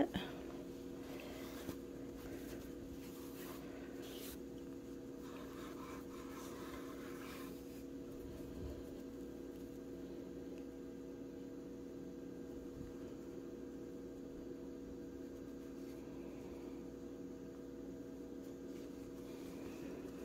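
A faint, steady hum of several fixed pitches, with soft rustling from hands handling crocheted yarn pieces during the first seven seconds or so.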